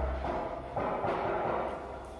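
Bass-heavy music from a stacked loudspeaker rig dying away. The deep bass fades out within the first half second, and only a faint, thin remnant of the music is left.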